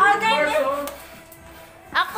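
Voices of a group over music, with the voices dropping away about a second in to leave faint music.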